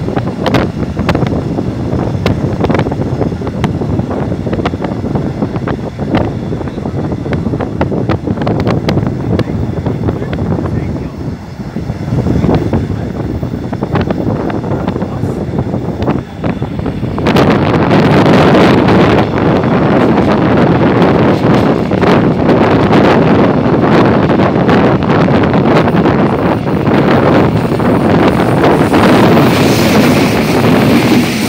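Wind buffeting the microphone and the running noise of a moving train, heard from an open carriage window, with scattered light clicks. A little over halfway through the noise jumps sharply louder and stays loud.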